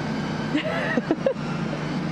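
Steady whir and hiss of the space station module's ventilation fans and equipment, a constant hum that never lets up.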